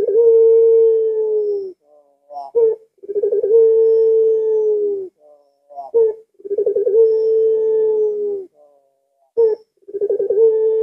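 A puter pelung dove, a domestic ringneck dove, gives its drawn-out cooing call three times. Each phrase is a short rising note and then a long coo of nearly two seconds that wavers at the start, holds one pitch and dips slightly at the end.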